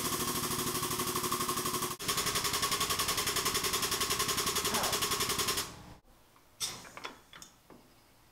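Hydraulic tube bender's pump running with a rapid, even chatter of about ten pulses a second while it bends a steel tie-rod tube. The pump stops a little after halfway, leaving a few faint clicks.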